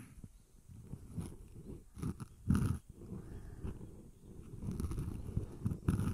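Close-up ASMR rubbing and rustling against the ear of a binaural microphone, in irregular low swells with the strongest stroke about two and a half seconds in.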